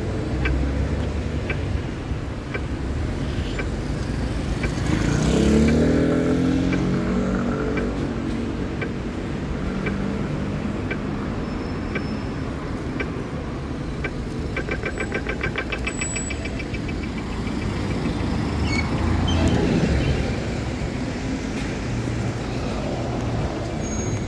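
Street traffic at a city intersection: a steady low rumble of engines, with a vehicle pulling away about five seconds in, its engine pitch rising, and another passing louder near twenty seconds. Faint regular ticking, about one and a half a second, runs through the first half, with a quick run of ticks around fifteen seconds in.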